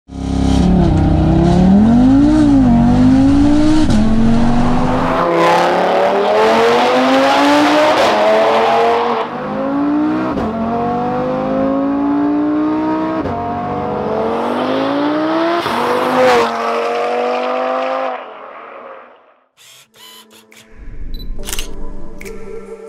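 Audi RS3 saloon's tuned 2.5-litre turbocharged five-cylinder accelerating hard through the gears: the engine note climbs, drops sharply at each upshift and climbs again, several times over. It fades out near the end and a short music sting follows.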